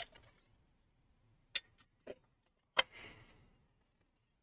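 A few light clicks and knocks as a 3.5-inch hard drive is handled and seated in a metal drive tray: one about a second and a half in, two soft ones around two seconds, and a sharper one near three seconds followed by a brief scrape.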